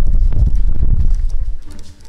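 Quick footsteps on a hard floor mixed with heavy rumbling handling noise from a camera carried on the move, a rapid run of low thuds that dies away near the end.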